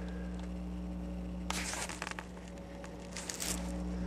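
Two short bursts of rustling handling noise, about one and a half seconds in and again around three seconds in, over a steady low hum.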